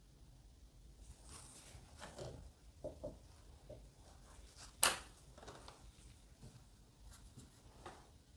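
Faint soft brushing of a watercolour brush on paper, with a few light taps and one sharp click about five seconds in as a brush is laid down on the table and another picked up.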